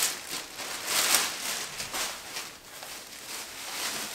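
Rustling of a hockey jersey and its packaging as it is handled, unfolded and lifted up, in a series of irregular rustles.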